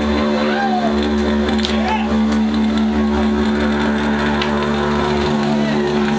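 Amplified electric guitar holding a steady, unchanging droning chord, with a low hum underneath.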